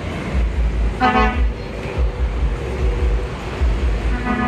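Low engine rumble of a truck and pickups passing on the road, with a vehicle horn tooting once briefly about a second in.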